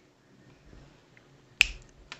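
A single sharp click of a small hard object being handled, about one and a half seconds in, followed by a few fainter clicks.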